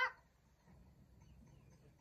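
The tail of a child's called-out word at the very start, then near silence with only faint background noise.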